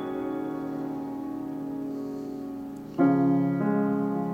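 Baldwin 6'3" Model L grand piano being played: a held chord rings and slowly fades, then about three seconds in a new, louder chord is struck.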